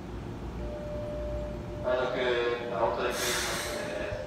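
A stopped Keikyu 1000-series electric train at a station platform lets out a short loud hiss of compressed air about three seconds in, over a faint steady tone.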